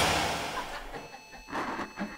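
A punk band's loud song cuts off right at the start, and its last ring dies away. What is left is faint hiss and buzz with thin, steady high whines, plus a few small knocks and shuffles about halfway through.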